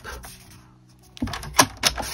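A sheet of cardstock being handled and lined up on a paper trimmer, with soft rustling and then a few sharp taps and clicks in the second half.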